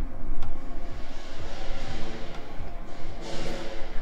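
Lion dance drums and crashing cymbals playing, with a low rumble throughout and the cymbals' wash swelling near the end.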